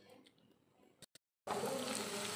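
Faint room tone, broken by a brief total dropout at an edit. Then, about one and a half seconds in, a steady rushing hiss of running water starts.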